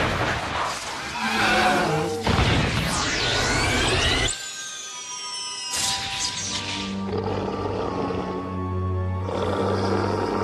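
Cartoon soundtrack: background music with magical sound effects, a loud rush about two seconds in with glittering falling chimes, then sustained music tones. A dinosaur's roar runs through it.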